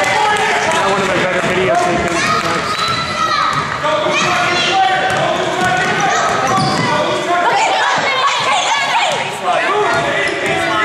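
A basketball being dribbled on a hardwood gym floor during a youth game, under a steady mix of players' and spectators' voices echoing in the gym.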